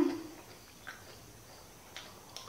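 The tail of a woman's closed-mouth 'hmm' of enjoyment while eating, fading out in the first moment, then quiet mouth sounds with a couple of faint clicks of chewing.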